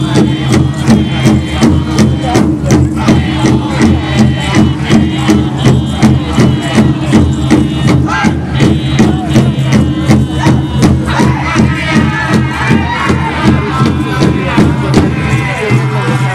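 Powwow drum group: a large drum struck in a steady, even beat while the singers chant in high, wavering voices.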